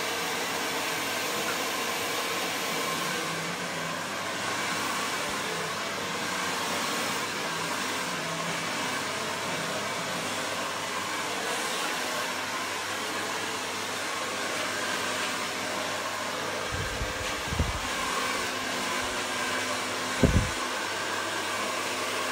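Hand-held hair dryer blowing steadily during a blow-dry. Two dull low thumps come near the end.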